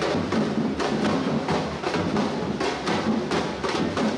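A street drum group playing drums together in a steady, driving rhythm of repeated sharp strikes.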